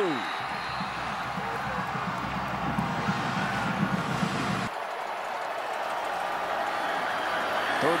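Football stadium crowd cheering after a touchdown, a steady noise of many voices. About halfway through it cuts off suddenly to a thinner, quieter crowd noise.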